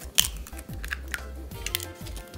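Raw eggs being cracked open over a mixing bowl: a few sharp shell cracks, the first and loudest just after the start, over steady background music.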